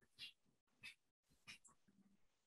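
Near silence: room tone, with three faint brief sounds about half a second apart.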